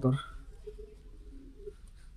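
Faint, low cooing of domestic pigeons, after a man's voice ends right at the start.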